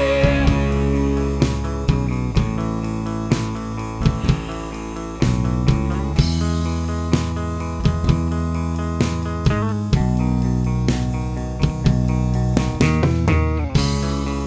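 Instrumental section of a punk rock song: electric guitars and bass playing sustained chords, with regular drum hits and no vocals.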